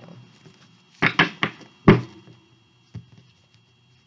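Tarot cards being handled: a quick run of taps and knocks about a second in, then one louder knock, and a faint knock near the end.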